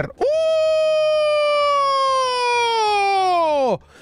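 A man's long, high-pitched held cry of "uuuh!" that slides slowly down in pitch for over three seconds, then drops away sharply. It is an excited reaction to pulling a Radiant Venusaur Pokémon card.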